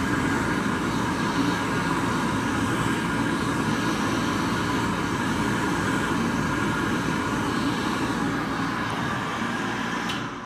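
A 1981 Excel Dryer R76-C chrome push-button hand dryer running, its fan motor blowing warm air out of the nozzle over a hand held beneath it. Steady blowing with a constant motor hum.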